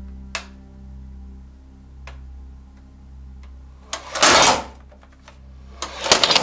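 Sustained background music notes with a few light clicks. About four seconds in comes a loud, half-second rattling clatter, with another near the end, as a large neodymium disc magnet pulls on an LCD monitor and jolts it on the tabletop.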